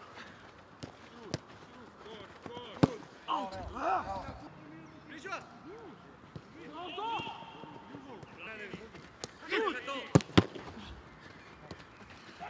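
Footballs being kicked: a handful of sharp thuds spread through, the loudest pair close together near the end, with players' distant shouts and calls in between.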